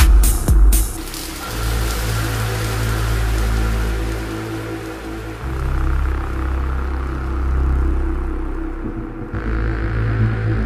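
Dark minimal techno from a DJ mix. The beat, about two strikes a second, drops out about a second in, leaving a breakdown of long, deep bass notes that shift pitch a few times under a fading hiss. A brighter layer comes back near the end.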